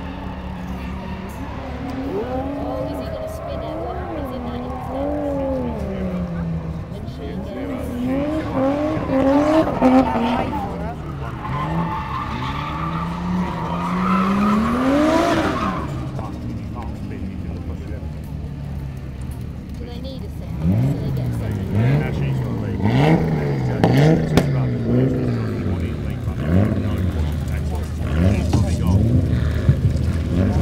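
Drift cars' engines revving hard, the pitch climbing and dropping with the throttle as they slide, with tyre squeal. About two-thirds of the way in come quick, repeated revs.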